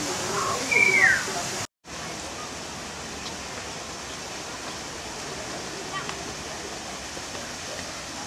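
Steady, even rushing noise like flowing water or a waterfall, after a brief high falling call about a second in. The sound drops out for an instant just under two seconds in.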